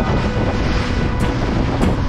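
Wind buffeting the microphone and water rushing past a small open motorboat under way at sea, with background music faintly mixed under it.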